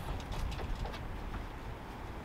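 A few faint clicks as a car hood is lifted open, over a steady low rumble.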